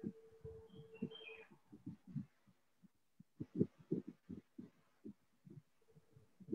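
A series of faint, irregular low thumps, with a faint steady hum during the first second and a half and a couple of brief high chirps about a second in.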